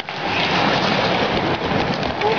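Hockey skates scraping and carving on rink ice, a loud continuous hiss with a few faint clicks, heard in a large indoor arena.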